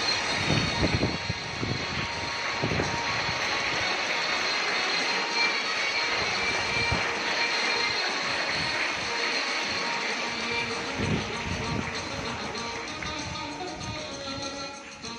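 A steady rushing noise with faint music beneath it. The music grows clearer near the end.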